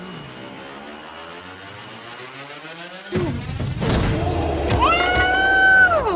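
Action-film soundtrack: music with a slow rising sweep, then a sudden heavy hit about three seconds in. Louder dramatic music follows, with a high tone that rises and is held near the end.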